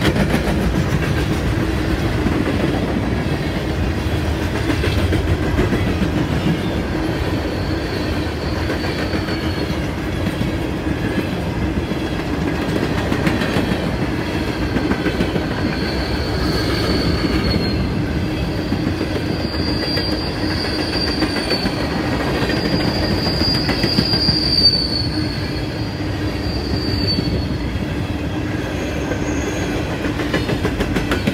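CSX coal train's hopper cars rolling past, a steady rumble of steel wheels on rail. A thin high wheel squeal comes and goes from about a quarter of the way in until near the end.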